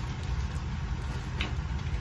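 Steady low background rumble, with a single faint click about one and a half seconds in.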